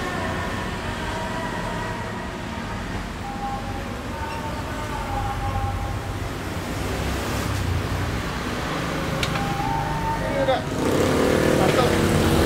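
Steady city road traffic, mostly motorbikes and cars passing close by. Voices come in near the end as the sound gets louder.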